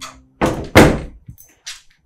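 A door banging: two loud, sudden thuds about a third of a second apart, followed by a few small clicks.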